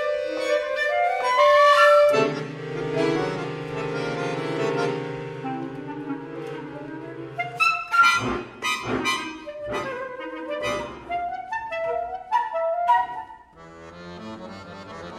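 Flute, clarinet and accordion trio playing a contemporary chamber piece. It opens with a rising woodwind run, then a held accordion chord under the winds for about five seconds, then short, sharp chords struck together by all three instruments.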